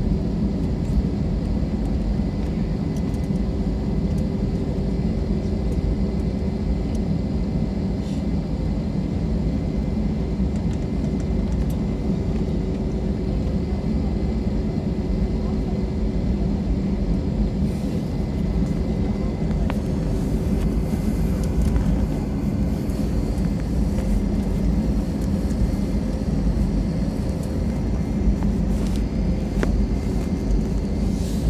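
Inside the cabin of an Airbus A320 taxiing: a steady low rumble from the idling twin jet engines and the rolling wheels, with a constant hum running through it.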